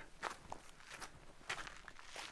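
Faint footsteps on a dry dirt track: a few soft, irregular steps.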